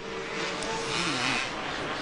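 Supercross race dirt bikes on the track, heard through a broadcast mix over a steady background hiss. One engine holds a note early on, then its pitch drops off about a second in as it comes off the throttle.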